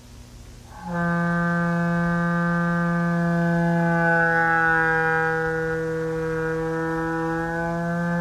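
The Honkpipe, a homemade wind instrument of clear plastic hose blown through a mouthpiece, sounds one long, steady low note with many overtones. The note starts about a second in.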